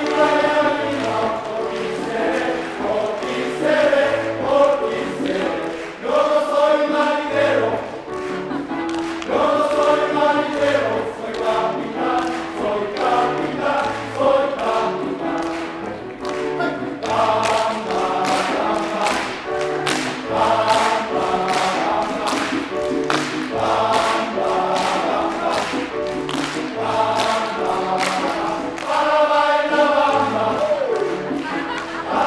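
Men's choir singing a rhythmic number in parts, with piano accompaniment.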